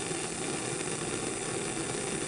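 Bunsen burner running on its hot blue flame, air hole open: a steady, even noise of burning gas.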